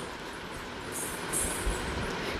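Steady low background noise, with two brief faint hisses about a second in.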